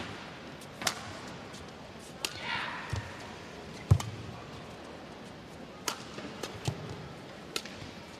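Badminton rally: sharp racket strikes on a shuttlecock at irregular intervals, about one a second, the loudest about four seconds in.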